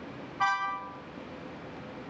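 A single short beep with a steady pitch, starting about half a second in, over a faint steady hum.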